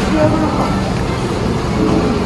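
Steady background noise of a busy indoor shopping arcade, with people's voices mixed into it.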